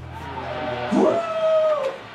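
Soundtrack of a training video heard through room speakers: background music fades out, then one long drawn-out call that rises in pitch, holds for most of a second and falls away.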